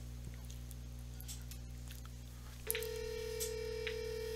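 Cisco SPA525G IP phone's speaker playing a ringback tone as a speed-dial call to a hotline extension rings out: one steady tone that starts nearly three seconds in and holds to the end, after low hum.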